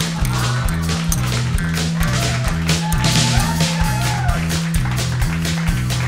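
Live band playing an instrumental number: bass guitar line and drums under twanging jaw harps, with short gliding tones in the middle.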